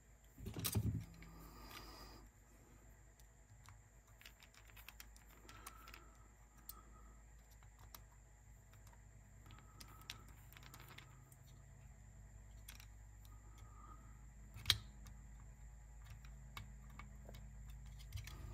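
Faint, scattered small clicks and taps of metal and plastic parts being handled and fitted by hand on a cassette deck's tape transport, with one sharper click about three-quarters of the way through, over a faint steady low hum.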